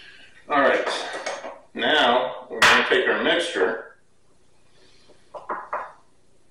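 A man's indistinct voice, then a few quick clinks of kitchen utensils against dishware near the end.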